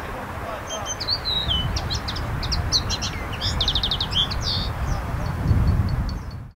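A songbird singing a varied phrase of chirps and whistled slides, with a fast trill about three and a half seconds in, over a steady low rumble.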